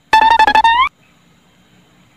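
A short musical sound effect: one note on a plucked string instrument, picked rapidly over and over for under a second, holding its pitch and then bending up at the end.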